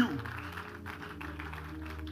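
Soft background music of steady held notes with no beat. A man's voice over a PA trails off at the very start.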